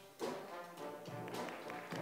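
Balkan brass band playing, with trombone and tuba sounding sustained notes, fairly quiet.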